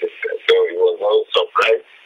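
A man speaking over a telephone line: a thin, narrow-band voice with the words hard to make out.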